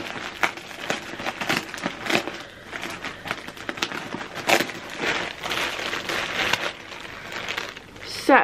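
Clear plastic bag of yarn crinkling and rustling in irregular bursts as it is opened and handled.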